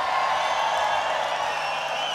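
Large festival audience cheering and whooping as a steady wash of crowd noise, with a faint steady low hum underneath.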